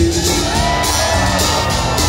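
Live country band playing loud, with acoustic guitar, electric guitar, drums and accordion over a steady beat, heard from the audience in a concert hall.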